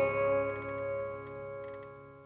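The last chord of a country song ringing out and dying away to silence.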